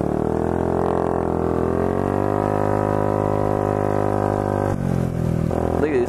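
Honda Ruckus scooter's small single-cylinder four-stroke engine running under way: a steady drone that rises a little in pitch early on, eases back, then changes near the end.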